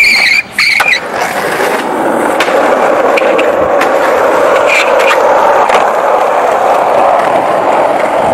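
Skateboard grinding down a metal handrail: metal squeals on metal twice in the first second, with a short break between. The steady rumble of urethane skateboard wheels rolling on street asphalt follows, with a few sharp clicks.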